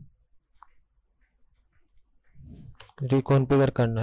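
A few faint computer mouse clicks in a near-quiet stretch, then a man's voice in the last second and a half.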